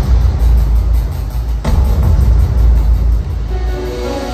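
Live band music from a stadium PA, heard from the crowd: a heavy booming synth bass, with one sharp hit about one and a half seconds in. Near the end the bass falls away as the song closes.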